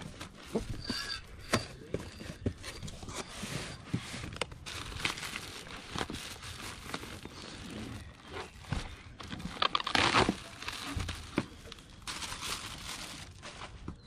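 Plastic packaging rustling and crinkling as a headlight is unpacked from a cardboard box: a poly mailer bag is handled and pulled out, with scattered clicks and taps and a louder rustle about ten seconds in.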